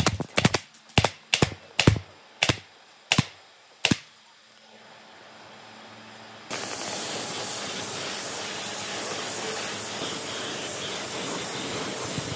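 Pneumatic brad nailer firing about eight times, a sharp snap every half second or so, driving brads into the cradle's wooden floor slats. After a short lull, a steady hiss starts suddenly about six and a half seconds in.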